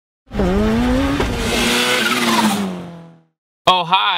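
Car engine revving hard, its pitch climbing a little and then sagging as it fades away over about three seconds.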